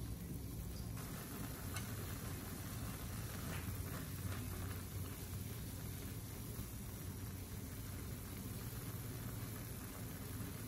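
Water boiling in a metal pan with a block of instant noodles in it, a steady low bubbling, with a few faint light clicks in the first half.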